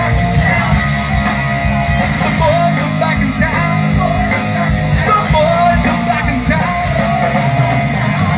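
Live rock band playing, with electric guitars, bass and drums and a male lead vocal, heard loud and steady through the outdoor PA.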